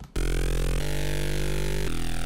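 Synthesizer patch built in Xfer Serum playing back: loud sustained electronic chords over a deep bass, changing chord twice.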